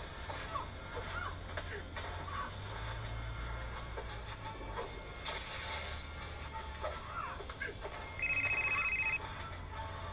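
Light background music plays throughout. About eight seconds in, a desk telephone rings once with an electronic trill lasting about a second.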